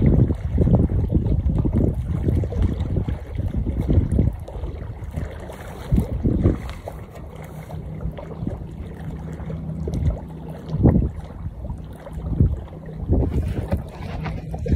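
Wind gusting over a phone microphone, with irregular low buffeting that is strongest in the first few seconds and comes back in gusts later.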